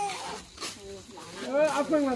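People talking, faint at first, with a voice growing louder near the end.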